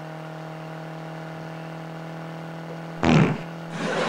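A steady engine drone as the van drives along. About three seconds in, one short, loud fart, the reason the van needs airing out.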